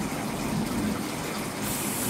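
A steady rushing hiss of outdoor background noise, even and unbroken, with no clear single source.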